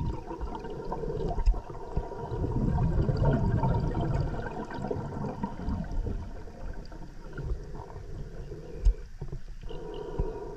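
Underwater sound of a diver breathing on a closed-circuit rebreather: a low rumble of water and gas moving, with gurgling, a faint steady hum and a few sharp knocks. The rumble swells for a couple of seconds near the middle.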